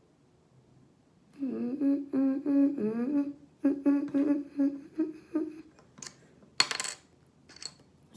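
A boy humming a tune with his mouth closed, a few seconds of held notes with short breaks, starting about a second and a half in. Near the end, a brief burst of clattering noise.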